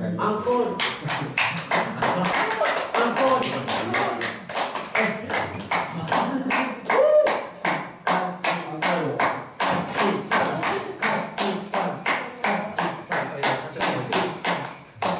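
Hand-held shaker struck and shaken in sharp, irregular strokes, about three a second, with a high jingling ring over them from a couple of seconds in. A voice sounds faintly underneath.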